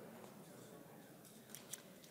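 Near silence: faint room hiss, with a couple of small ticks near the end.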